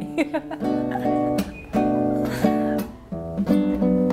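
Nylon-string acoustic guitar strummed in chords: four held chord groups with short breaks between them. The guitar still has a stage damper fitted, put on to keep it from making noise.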